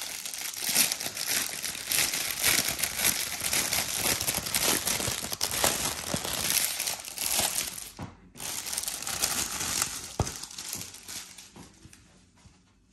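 Clear plastic polybag crinkling and rustling as a folded football shirt is handled and pulled out of it. The crinkling is continuous, stops briefly about eight seconds in, then resumes and fades out near the end.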